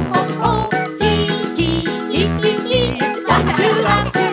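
Upbeat children's song with a bouncy bass line about twice a second and bright chiming instruments, with cartoon children's voices singing and laughing "hee hee".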